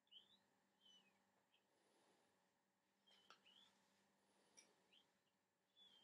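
Faint short high chirps, several spread over a few seconds, some sliding up in pitch and some sliding down, over a low steady hum.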